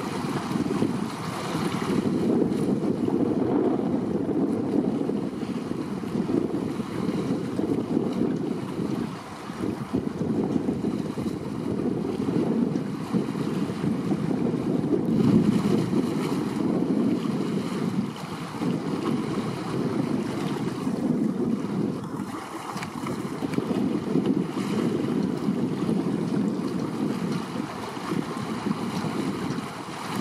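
Wind blowing across the microphone in uneven gusts, with the wash of choppy sea water beneath it.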